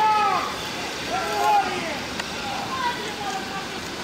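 Indistinct voices of people talking, over steady outdoor background noise.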